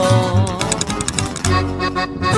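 Corrido tumbado music: an instrumental passage of plucked strings over bass, with no singing.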